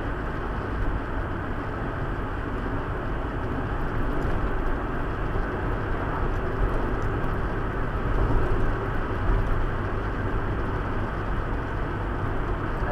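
Steady road noise inside a moving car: tyres on asphalt and the engine, a constant low rumble picked up by a windscreen-mounted dashcam in the cabin.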